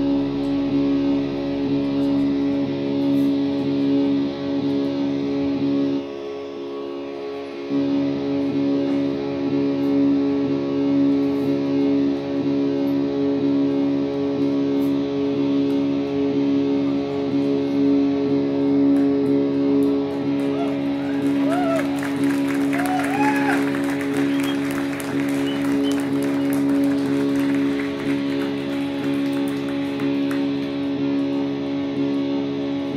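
A rock band playing live: electric guitars run through effects hold a steady drone of sustained notes, with the low end dropping out briefly about six seconds in. After about twenty seconds, sliding notes and a crackling hiss are layered on top for several seconds.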